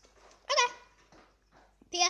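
A pet parrot giving one short, loud squawk about half a second in.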